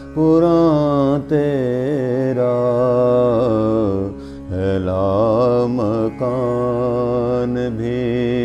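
A man singing an Urdu Sufi kalam in a drawn-out, melismatic style: long wavering vowels with no clear words, broken by short breaths about a second in and about four seconds in, over a steady low drone.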